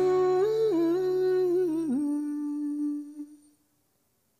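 A man's voice humming a long closing note that wavers and bends in pitch, over the accompaniment's last held chord, which cuts off about halfway through. The voice then fades away near the end.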